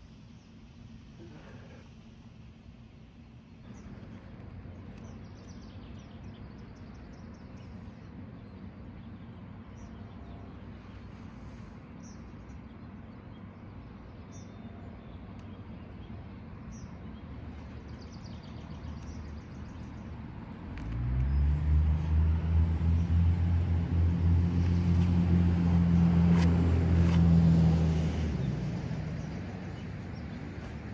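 Faint bird chirps over quiet ambience, then about twenty seconds in a motor vehicle's engine comes up suddenly as a loud low drone, holds for about seven seconds and fades near the end.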